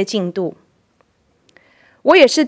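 A woman speaking into a lectern microphone stops about half a second in. A pause follows, with a faint click about a second in and a soft intake of breath near the end.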